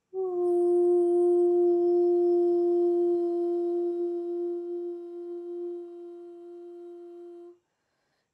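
A woman's voice toning one long, steady note in light-language chanting, held for about seven and a half seconds. It settles slightly in pitch as it begins, weakens in its second half, then stops abruptly.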